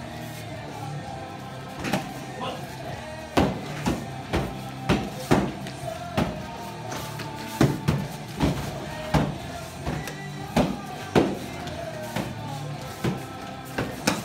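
Practice weapons repeatedly striking shields and strike pads: sharp, irregular hits, roughly one or two a second, starting about two seconds in. Background music plays underneath.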